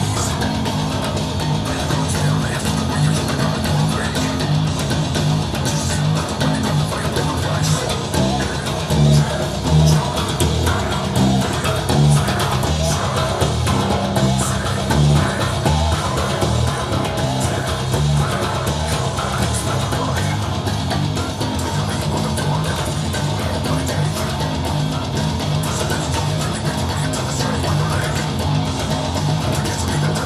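Electric bass guitar, a Mike Lull T-Bass tuned down to C, playing a slow, low metal riff that repeats over and over. Other instruments fill out the sound.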